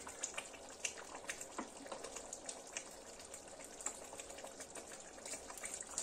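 Thick zucchini adjika boiling in a large pot, its bubbling surface giving faint, irregular pops and plops.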